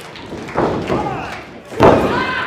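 Impacts on a wrestling ring's mat as one wrestler works over another on the canvas. There is one thud about half a second in and a louder, sharper one near the end.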